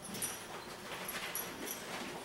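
A dog in a weight-pull harness hauling a loaded wheeled cart: faint low noise with a few scattered light clicks.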